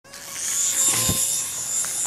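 Small electric toy RC helicopter running, its motor and rotor giving a steady high-pitched whine, with a brief low thud about a second in.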